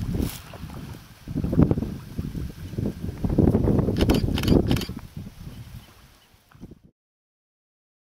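Wind buffeting the microphone outdoors, a low rumble coming in gusts, which cuts off suddenly near the end.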